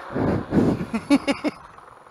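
A man laughing in short broken bursts that fade out about a second and a half in, leaving quieter riding noise.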